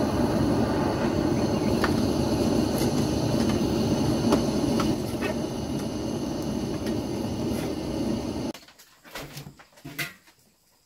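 Handheld butane torch burning with a steady hiss as it is aimed at kindling, with a few faint cracks; the hiss cuts off suddenly about eight and a half seconds in.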